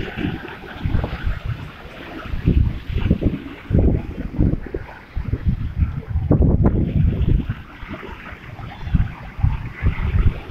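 Wind buffeting the microphone in irregular gusts over the steady wash of choppy sea, with waves surging and breaking against a stone seawall.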